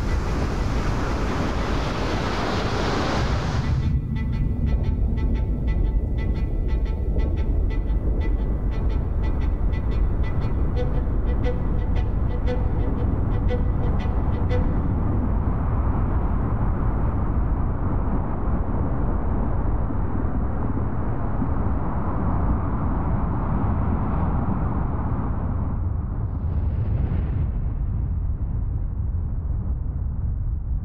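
Cinematic film soundtrack: a loud rushing wash that cuts off about four seconds in, then a regular ticking pattern with faint held tones over a deep steady rumble. Near the middle the ticking and tones drop out, leaving the low rumble alone.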